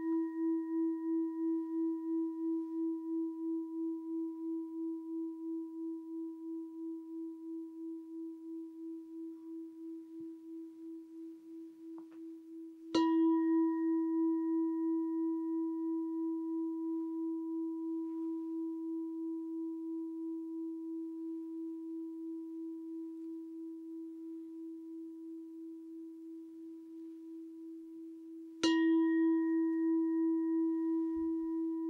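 A singing bowl struck twice, about 13 seconds in and again near the end, over the ringing of a strike made just before; each strike gives a sharp attack, then a low tone with a steady wobble that slowly dies away. The strikes mark the close of the meditation.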